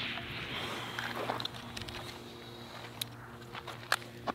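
Footsteps crunching on dry desert dirt while walking up to the targets, with a couple of light clicks about three seconds in and near the end.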